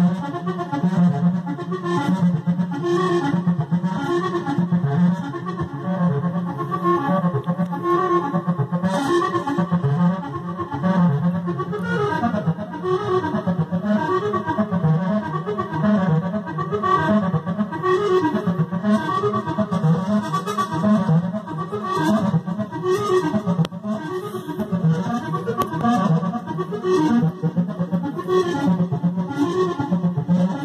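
Access Virus synthesizer playing a patch: many overlapping notes over a steady low note that holds throughout, the texture turning busier and more wavering about twelve seconds in.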